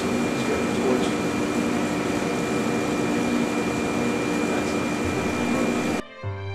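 Steady hum and hiss of running laboratory machinery at an X-ray photoelectron spectrometer, with a thin high steady tone over a lower hum.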